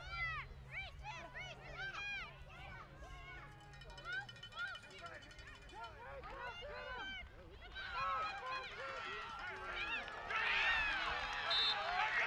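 Spectators and players at a youth football game shouting and cheering, many voices at once with no clear words, swelling louder in the last few seconds as the play ends.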